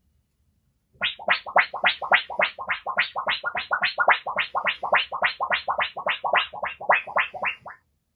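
Body-sound imitation of a flying UFO: a fast, even warbling pulse, about three and a half strokes a second, each stroke sweeping up in pitch. It is made by a man with his mouth pressed against another man's bare back. It starts about a second in and stops just before the end.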